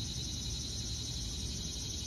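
Insects chirring steadily in a high, even band, over a low outdoor rumble.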